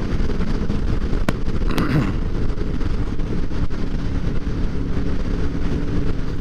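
Motorcycle engine running at road speed with wind rushing over a helmet-mounted camera, a steady noise throughout, with one sharp click a little over a second in.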